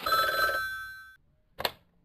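Telephone bell ringing: one ring that fades out just over a second in, followed by a single short click near the end.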